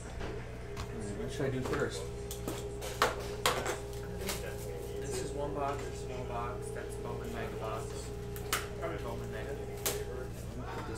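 Card boxes and packs being handled in a plastic bin: scattered sharp knocks and clatter, a few louder ones about three and three and a half seconds in, over a steady hum.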